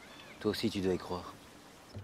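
A person's voice speaking one brief line of film dialogue about half a second in, lasting under a second, over a quiet background.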